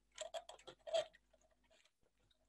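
Faint small clicks and taps from a cardboard pulley model being handled as its drive band is shifted onto another wheel, a cluster of them in the first second, then almost nothing.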